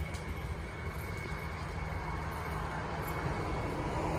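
Steady low rumble and hiss of outdoor city street ambience, with no distinct events, rising slightly toward the end.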